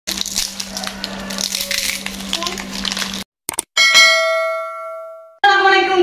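Crisp fried peanut crackers (rempeyek) crackling and snapping as a hand breaks and handles them, over a steady low hum. Then, about halfway through, a single bell-like chime rings out and fades away.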